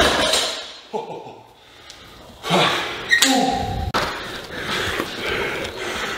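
Knocks and thuds of a loaded deadlift bar and its bumper plates on the gym floor just after a heavy lift, with a few short vocal sounds; the loudest knocks come about two and a half and three seconds in.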